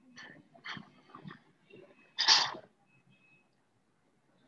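A person sneezing once, loudly, about two seconds in, after a few short breathy sounds.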